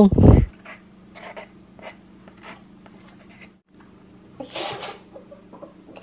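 Mostly quiet room with a low steady hum. There is a thump at the very start, a few faint soft clicks, and a brief hiss about four and a half seconds in.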